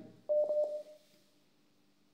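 A short electronic telephone beep: one steady tone lasting about half a second, with two light clicks in it.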